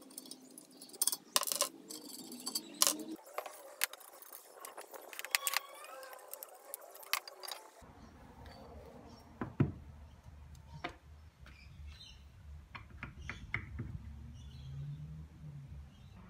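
Small metal parts and tools clicking and clinking as a jointer is dismantled by hand: bolts, fittings and bearing parts handled and set down on a bench, with scattered sharp knocks.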